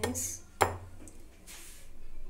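Wire whisk clinking against a glass mixing bowl while whisking cake batter: two sharp clinks about half a second apart, with fainter scraping in between and after.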